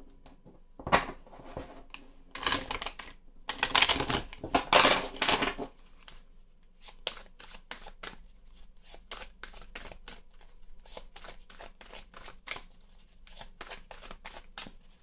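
A deck of oracle cards being shuffled by hand: a few louder rustling swishes in the first six seconds, then a run of quick, light card flicks and taps.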